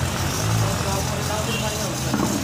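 Steady hiss of steam jetting from a pipe fitted to a pressure cooker on a gas burner, over a low steady hum.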